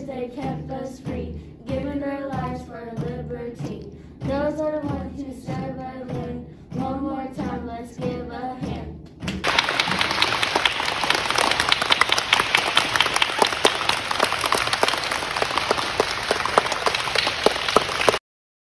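Children singing. About nine seconds in, this gives way suddenly to a group of children clapping, many hands at once, which cuts off abruptly at the end.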